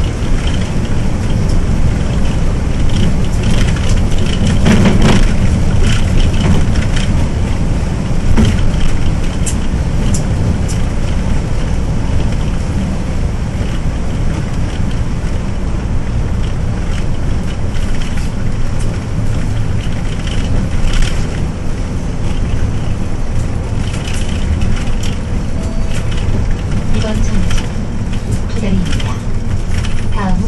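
Hyundai New Super Aerocity city bus heard from inside the cabin while driving: a steady low engine and road noise, with occasional short rattles and knocks from the bus body and fittings.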